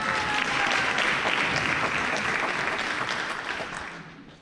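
Audience applauding in a concert hall, building quickly and then dying down near the end.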